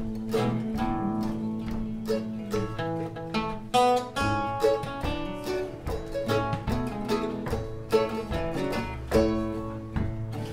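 Acoustic string band playing an instrumental introduction to a gospel song: a mandolin picking the tune over strummed acoustic guitars, in a steady rhythm.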